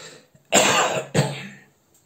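A man with a heavy cold coughing twice in quick succession after a short breath in.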